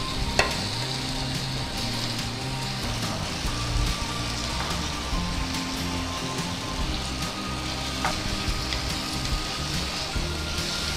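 Fried veg momos sizzling in a tomato-and-soya-sauce masala in a nonstick kadai as they are stirred with a steel spoon. There is a sharp clink of the spoon on the pan about half a second in and another near eight seconds.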